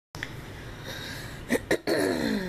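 A woman coughs twice in quick succession, short and sharp, about one and a half seconds in, over low room noise; her voice starts just at the end.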